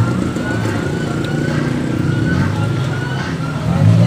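Steady street traffic: vehicle engines running along a busy street, with voices talking in the background.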